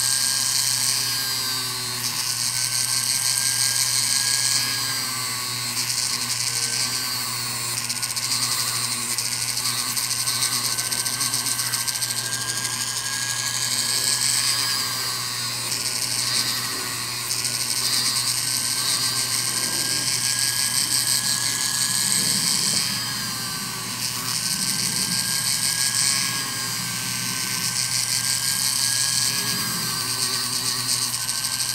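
Rotary tool running with a steady high whine, its sanding disc grinding a cloisonné enamel earring. A gritty scraping comes and goes every few seconds as the piece is pressed to the disc and lifted off.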